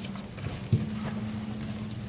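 Papers and a folder being handled on a table close to a microphone: faint rustles and small knocks, with one sharper knock a little under a second in, over a steady low hum.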